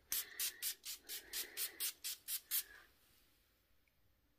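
Perfume atomizer pump sprayed into the air in about ten quick hissing puffs, roughly four a second, stopping a little under three seconds in.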